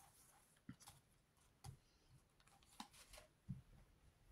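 Near silence, broken by a few faint, light taps and slides of playing-card-sized oracle cards being spread out and picked from a cloth-covered table.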